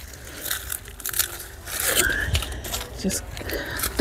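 Sharp scissors snipping through plant stalks, with the leaves rustling and crunching as the stems are handled: a string of short, irregular clicks and crunches.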